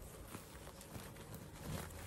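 Faint handling sounds of jute burlap being gathered and pulled tight, with a few soft ticks.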